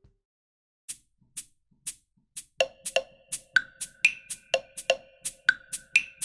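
Ableton Live's Impulse 'Percussion 1' drum kit being played. A few light high ticks come first, then from about two and a half seconds in a quick, uneven run of short percussion hits, about three to four a second, several of them ringing briefly at a fixed pitch.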